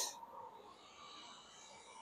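Close to silence: a very faint, steady hum and whine from the running heat pump equipment.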